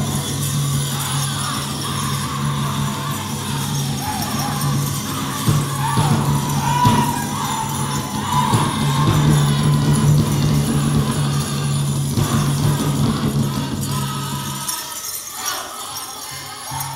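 Pow wow drum group singing and drumming for a Men's Traditional dance, with the bells on the dancers' regalia jingling. The low part of the music drops out for about a second near the end.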